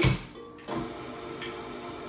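A knock, then a KitchenAid stand mixer's motor starting under a second in and running steadily on slow, beating butter and sugar into a paste for cookie dough.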